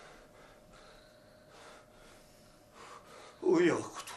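Quiet room tone with a faint steady hum, then near the end a man's short, loud voiced exclamation, like a gasp.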